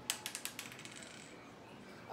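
Small plastic LEGO minifigure parts clicking as they are handled between the fingers: a quick run of about ten light clicks in the first second, then quiet room tone.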